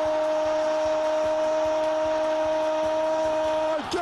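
Spanish-language football commentator's drawn-out goal call, one long shouted note held at a steady pitch for nearly four seconds and breaking off near the end.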